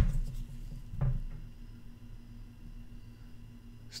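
Soft handling noise: a low thump at the start and another about a second in, over a quiet steady low hum.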